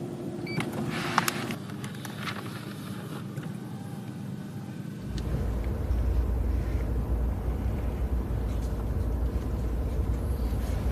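Cabin noise inside a moving Lexus LS 500h saloon. There are a few light clicks near the start, then a steady low road rumble comes in about halfway through and holds.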